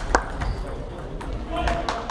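Celluloid-style table tennis ball struck by a bat and bouncing on the table, the last sharp click of a rally just after the start, followed by fainter, scattered clicks of play at other tables in the hall. A brief voice calls out near the end.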